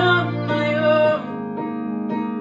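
A woman singing a sustained line of a pop ballad over a guitar backing; her voice drops out about a second in and the guitar chords carry on.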